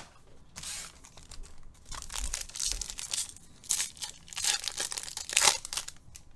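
Trading-card pack wrappers being torn open and crinkled by hand: a run of irregular crackling, tearing bursts, loudest about four seconds in and again near the end.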